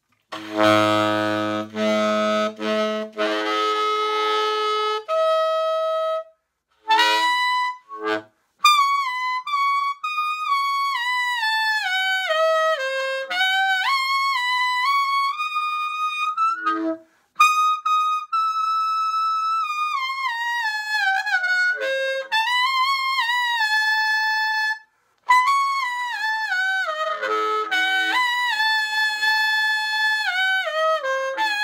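Lineage tenor saxophone played solo: a low note held for about three seconds, then overblown phrases that climb high into the upper register, with sweeping runs up and down and a few short breaks. The top notes come out full and easy.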